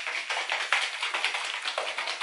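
Plastic applicator bottle of hair dye and cream developer being shaken hard by hand to mix the two, about four or five quick shakes a second.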